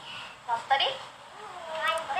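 A girl's high-pitched voice in short, brief utterances, with a longer bending one near the end.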